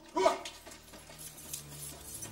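A man's short, loud cry right at the start, given as he is grabbed and dragged off. Faint, low, sustained notes follow from about a second and a half in.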